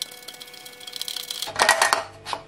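A small E14 candle bulb being unscrewed by hand from a cooker hood's lamp socket: a faint, fast run of fine clicks and scraping as the threads turn, then a louder burst of sound about a second and a half in.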